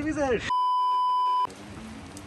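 A censor-style bleep: one steady beep tone lasting about a second, with all other sound blanked out beneath it, ending abruptly.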